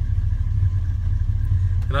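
Truck engine idling steadily with a low, even rumble just after start-up, while oil pressure comes up and oil circulates before driving.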